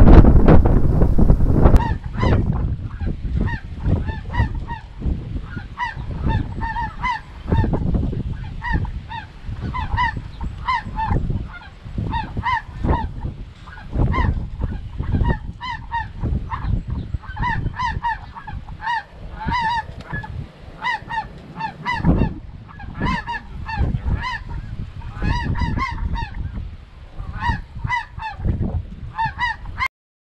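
Snow geese calling: a continuous chorus of many overlapping honks. Wind rumbles on the microphone underneath, heaviest in the first two seconds.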